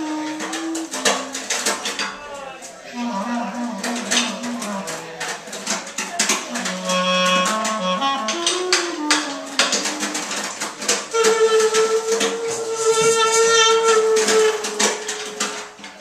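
Free improvised music for clarinet, wordless voice, cello and drums: shifting, stepping pitched lines over dense, scattered drum and cymbal strokes, with one long held note through the second half.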